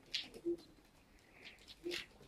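Pet ferrets giving short, soft low clucks (dooking), two single notes, among brief scratchy rustles and clicks as they move in a play tube.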